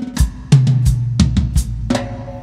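Pearl drum kit played in a short phrase of about eight hits, with a snare tuned up high for a timbale-like crack; a low drum rings on under the middle of the phrase.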